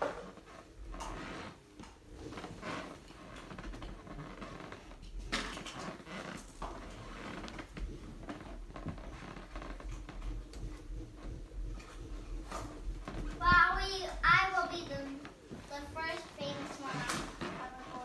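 A child's voice, brief and high-pitched, about three-quarters of the way in; otherwise faint scattered clicks over a low steady hum.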